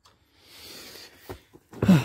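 A man sighing: a soft breathy rush, then near the end a short voiced sigh falling in pitch.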